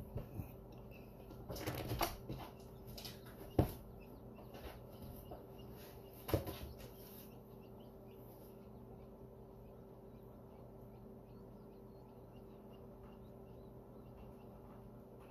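Inside a quail incubator: a steady hum of the incubator fan, with a few sharp knocks and scuffling taps in the first seven seconds and faint, short, high peeps of newly hatched quail chicks after that.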